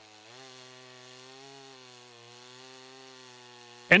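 Stihl MS 661 two-stroke chainsaw cutting through a large log under load. Its engine note rises slightly at the start, then holds a steady pitch.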